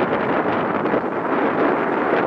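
Wind buffeting the camera microphone: a loud, steady rushing noise.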